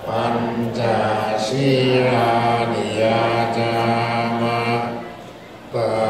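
Buddhist monks chanting in unison, with long low notes held on a nearly level pitch. The chant pauses briefly for breath near the end, then starts again.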